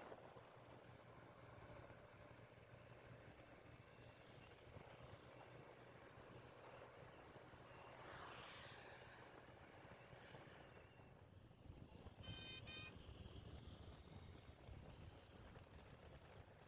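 Faint, muffled motorcycle riding noise: a low steady engine hum under even road and wind noise, swelling briefly about halfway through. A short pulsing horn beep sounds about twelve seconds in.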